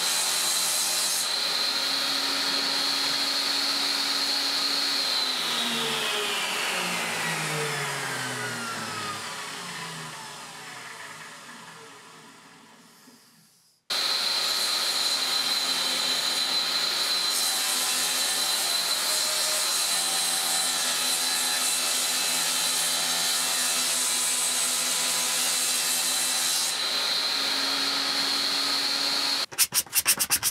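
Table saw running at speed with a steady high whine as a walnut board is ripped into thin strips. About five seconds in it is switched off and spins down, the pitch falling until it stops. It then runs again at full speed and cuts off near the end.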